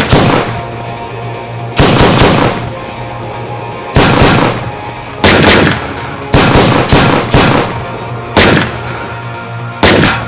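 Gunfire in a film shootout: about ten single gunshots at irregular intervals, each ringing off briefly, over a sustained low music score.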